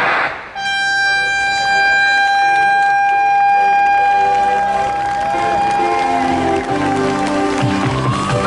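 A sudden loud burst, then a long steady air-horn blast of about five seconds sounding the mass swim start of a triathlon. Other tones and voices come in under it as it ends.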